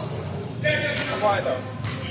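Basketball bouncing on the indoor court floor, two sharp bounces about a second apart, among players' shouting voices.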